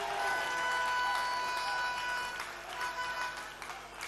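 Audience applause with a held musical note over it. The note breaks off about two and a half seconds in, and a shorter note follows.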